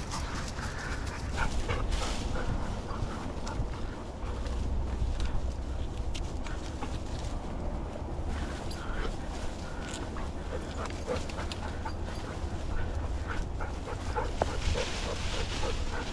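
Rustling and crunching of dry brush and grass as a hunter and dogs move through cover, with a steady low rumble of wind on the microphone. A hunting dog's whines and panting come through close by.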